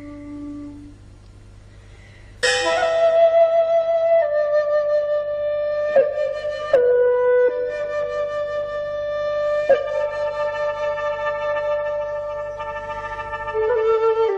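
Solo flute music in long held notes: a quiet note fades away, then a loud new phrase begins about two and a half seconds in and moves slowly from note to note.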